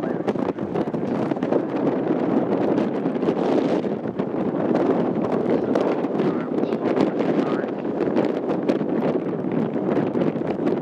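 Wind buffeting the microphone: a steady, dense rumble with constant crackling flutter.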